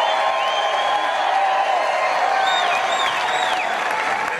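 Large crowd cheering and applauding steadily, with several shrill rising-and-falling whistles and whoops in the second half.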